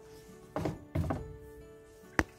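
Soft background music with steady held tones, and two dull thunks about half a second and a second in.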